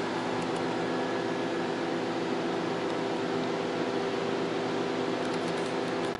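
Steady whir and hum of the cooling fans in a rack of running vintage HP test instruments, a spectrum analyzer and a sweeper, with several steady tones in the hum.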